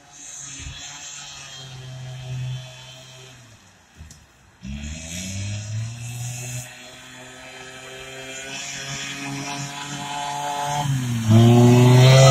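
Arctic Cat Kitty Cat children's snowmobile running. Its small engine drops out briefly about four seconds in, then rises in pitch as it speeds up, and it grows much louder near the end as it comes close.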